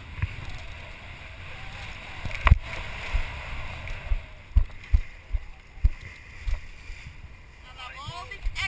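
Wind and sea-water rush on a head-mounted action camera's microphone aboard a sailboat, broken by a series of short low thumps and knocks, the loudest about two and a half seconds in, as the spinning rod and reel are handled.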